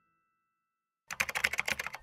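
Silence for about a second, then a rapid run of computer-keyboard typing clicks: a sound effect for text being typed into a search box.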